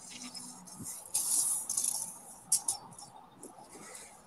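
Handling noise from measuring a concrete fence post with a tape measure: a short hissing rustle about a second in, then a few light clicks.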